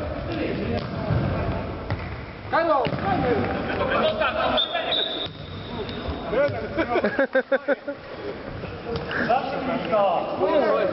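A futsal ball being played on a sports hall floor, with knocks of kicks and bounces echoing in the hall, and players calling out between them. A brief high squeak comes about five seconds in.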